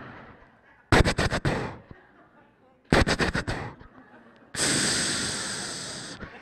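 A man making mouth sound effects close into a handheld microphone, imitating a blood pressure machine at work: two bursts of rapid clicking about two seconds apart, then a long hiss that slowly fades.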